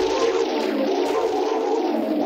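Live electronic music: a sustained, wavering synthesizer texture in the middle range. A deep low drone cuts off right at the start.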